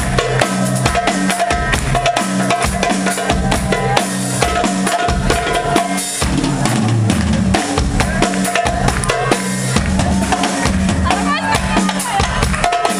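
Darbuka played with fast, dense hand strikes, together with a drum kit, in a steady driving rhythm.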